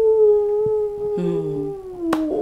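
A woman's long drawn-out "ooh" held on one pitch, sinking slightly toward the end, as an exclamation. A second, lower voice hums along briefly in the second half.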